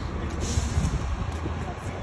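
City street traffic with buses running, heard as a steady low rumble, with a short hiss about half a second in.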